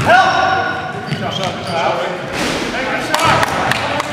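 Basketball game sounds in a gym hall: the ball bouncing on the hardwood floor, players calling out, and short high squeaks from sneakers.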